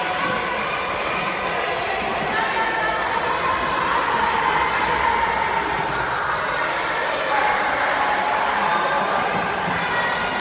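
Babble of many young girls' voices talking and calling out at once, overlapping so that no single voice stands out.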